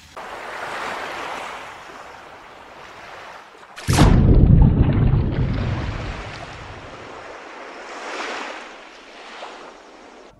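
Ocean sound effects for an underwater intro: a rushing wash of surf that swells and ebbs, broken about four seconds in by a sudden loud plunge into water with a deep rumble that fades out over a few seconds.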